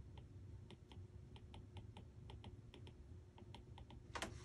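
Faint, irregular clicks and taps of a stylus tip on a tablet's glass screen while writing, several a second.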